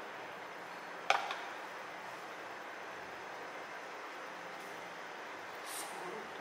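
Quiet handling of food on a plastic cutting board: a single sharp click or tap about a second in and a brief faint rustle near the end, over steady low background hiss.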